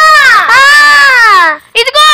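A young girl's high voice holding one long, drawn-out wailing note that dips and then rises in pitch, breaking off about one and a half seconds in, followed by short quick notes near the end.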